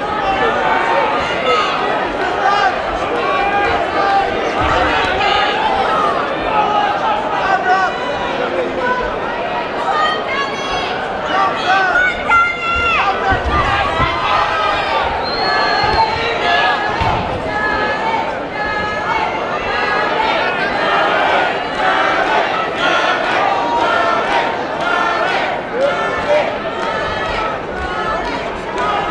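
Crowd of spectators at a boxing bout shouting and chattering, many voices overlapping steadily, with a few low thuds.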